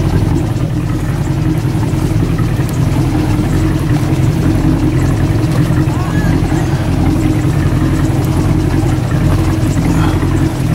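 A boat motor running steadily, heard from on board as a constant low hum, with a few faint distant voices above it.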